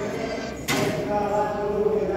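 People's voices, with a sudden short burst of noise about two-thirds of a second in.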